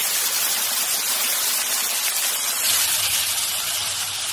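Thick steak sizzling on a hot ribbed grill, a steady hiss; a low hum joins about two-thirds of the way in.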